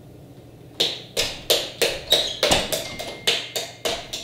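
A rapid, even series of sharp knocks, about three a second, starting about a second in.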